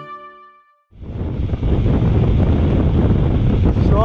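Music fades out in the first second, then loud, steady wind noise on the bike-mounted camera's microphone as the mountain bike rides downhill on a paved road.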